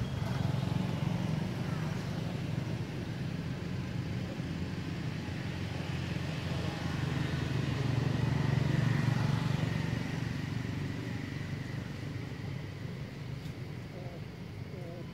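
A steady low motor rumble, like a vehicle engine running nearby, swelling about eight seconds in and easing off near the end.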